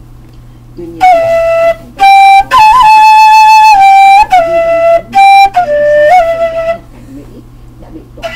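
Half-inch PVC six-hole transverse flute playing a short phrase of about eight clear notes, la–do–re–do–la–do–la–sol–la, rising to the highest note, held for over a second in the middle, then stepping back down to la.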